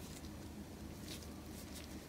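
Faint, brief soft rustles and scratches, a few of them about half a second apart, as a sticky boiled glutinous rice cake is rolled in shredded coconut.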